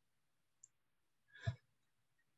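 Near silence with one short click about one and a half seconds in.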